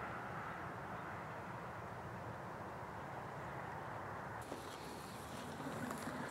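Steady low background rumble outdoors; about four and a half seconds in, rustling and crunching begins, as of footsteps moving through dry, frost-covered grass and weeds.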